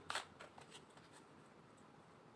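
A deck of tarot cards handled and shuffled by hand: one short, sharp rustle of cards just after the start, then a few faint card ticks.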